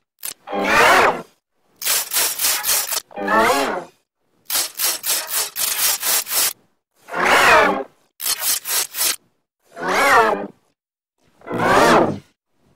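Electronically distorted sound clip played over and over in short pieces. Brief pitched tones with wavering overtones alternate with runs of fast rasping pulses, separated by short gaps.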